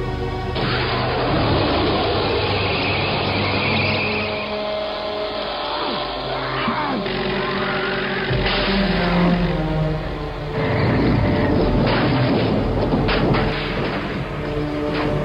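Film soundtrack: an orchestral score playing over dense vehicle engine noise from a chase, with several crashing impacts in the second half.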